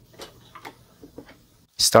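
A few light clicks and knocks from a Hamilton Beach tilt-head stand mixer as its head is lowered into the bowl, before the motor is started.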